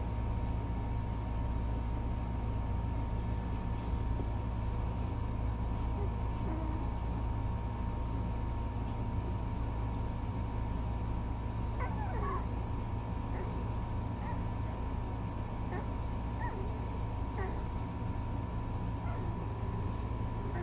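One-week-old miniature Bordoodle puppies giving short, faint squeaks and whimpers, several in the second half, over a steady low hum.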